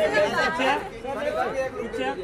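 Only speech: several people talking and calling out at once, overlapping chatter.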